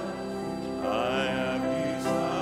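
Congregation singing a hymn, with sustained notes and a rising phrase about a second in.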